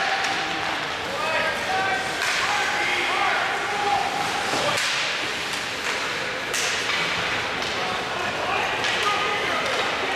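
Ice hockey game sound: scattered shouts and calls from players and spectators, broken by a few sharp clacks of sticks and puck, the sharpest about five and six and a half seconds in.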